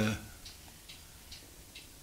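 Faint, steady ticking, evenly spaced at about two ticks a second, with a man's brief voiced hesitation at the very start.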